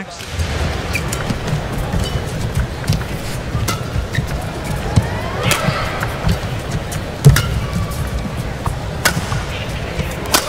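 Badminton rally: sharp cracks of rackets striking the shuttlecock, roughly a second apart, the loudest about seven seconds in, over a steady murmur of arena crowd noise.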